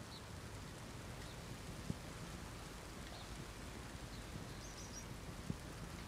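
Faint steady outdoor ambience: an even hiss over a low, unsteady rumble. Two brief clicks come about two seconds in and near the end, and there are a few faint high chirps.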